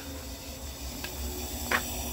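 Propane burners of a pig roaster running steadily, a hiss over a low rumble.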